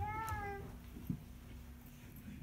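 A short high-pitched cry that rises and falls at the very start, meow-like, then a single sharp knock about a second in from the microphone being adjusted on its stand.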